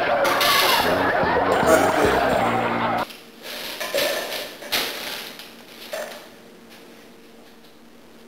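Several voices talking over one another for about three seconds. Then the sound drops suddenly to a quiet background, with a few short knocks.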